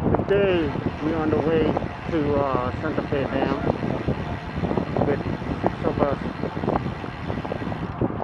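Wind and riding noise on the microphone of a camera on a moving bicycle, with a voice talking indistinctly in the first few seconds.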